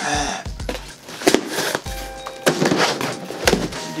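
A knife cutting through the packing tape of a cardboard box: a few rough ripping and scraping strokes, with a couple of sharp knocks as the cardboard flaps give.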